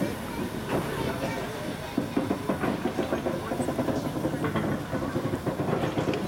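A DR class 52 steam locomotive turning on a turntable: steam hissing from the engine, with irregular clicks and clatter from the moving turntable and rails.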